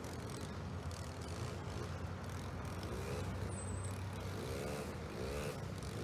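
Steady low rumble of distant vehicles, with a few short rising-and-falling tones about halfway through.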